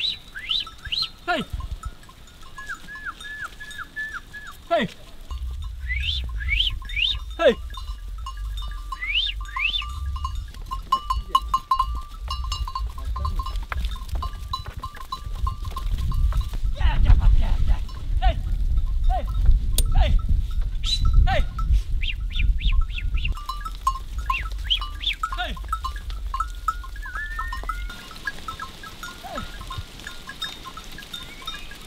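A flock of sheep bleating while being driven, with a man shouting "hey" at them in the first few seconds. A low rumble runs under most of it.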